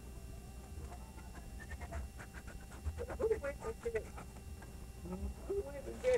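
A dog panting in quick, rhythmic breaths, with faint indistinct voices, over a steady low rumble.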